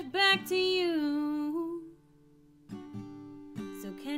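Woman singing with acoustic guitar: a held sung note that falls and fades out about two seconds in, a short pause, then the guitar comes back in and the singing picks up again near the end.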